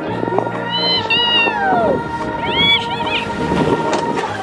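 High-pitched squeals from sledders going down a snowy hill, twice: once about a second in and again near the three-second mark, over background music.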